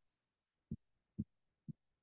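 Three soft, dull clicks of a computer mouse, about two a second, while text is selected on screen.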